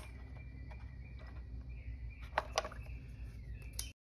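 Knife blade cutting and scraping the plastic housing of a fuel pump module, with a few sharp clicks, two close together about two and a half seconds in, over a steady low hum.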